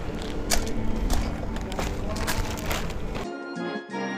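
Footsteps on gravel over a low rumble. About three seconds in, added background music with sustained chords cuts in abruptly.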